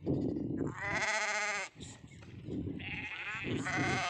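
Sheep bleating: two long quavering calls, the first about a second in and the second near the end.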